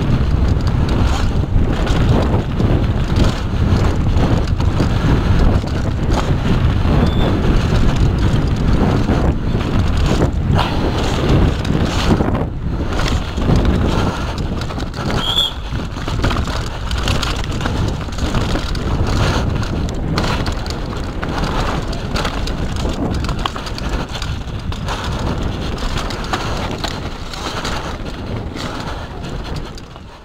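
Wind buffeting a bike-mounted camera's microphone at speed, mixed with the constant rattle and knocking of a downhill mountain bike's tyres, chain and frame over rough dirt and rocky trail.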